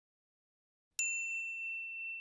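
A single bright 'ding' sound effect, like a notification bell, struck about a second in after silence and ringing on in one high, steady tone.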